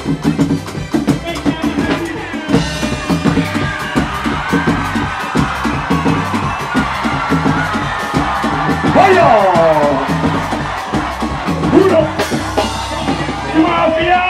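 Live band playing loud dance music, with a quick, steady drum beat, a bass line and guitar.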